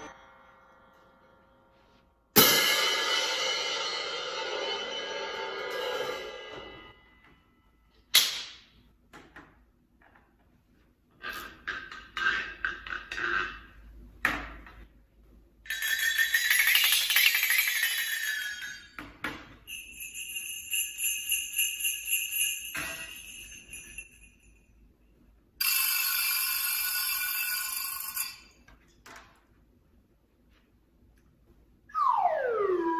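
Orchestral percussion played one instrument after another. A cymbal is struck once with a stick about two seconds in and rings for several seconds. Then come a short strike, a quick run of taps, and later bright ringing metal tones, some with rapid repeated strikes, like small bells.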